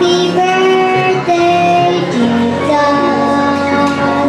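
A young girl singing a Christmas song into a microphone, holding long sustained notes that step from one pitch to the next.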